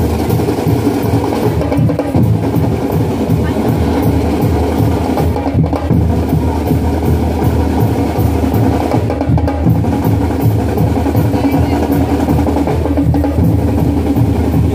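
Marching band drum line playing a steady, driving beat on snare and bass drums.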